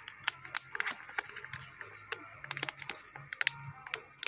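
Scattered light clicks and knocks of a small wooden stingless-bee hive box being handled and opened.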